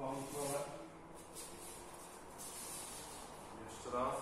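A brief voice in the first second, then soft rustling and shuffling of cotton gi and bare feet on the dojo mat as two aikidoka rise from kneeling to standing, with another short vocal sound near the end.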